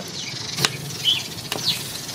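A single sharp metal click about half a second in, as metal grill tongs set a lamb loin down on the steel grill grate. Short bird chirps come twice in the background.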